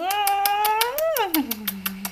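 A woman's long hummed 'mmm' while kissing a baby's cheek. It rises in pitch for about a second, then slides down low and holds, with light rapid lip clicks running through it.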